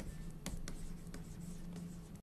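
A stylus writing by hand on a graphics tablet, with faint scratching and a few short taps of the pen tip, over a steady low hum.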